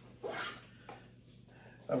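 A short scratchy rasp from a Think Tank Airport Security rolling camera bag as a hand pulls at its padded fabric dividers to lift out a lens, followed by faint handling sounds.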